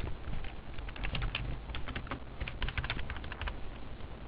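Computer keyboard being typed: quick, irregular key clicks coming in two runs, faint, over a low steady hum.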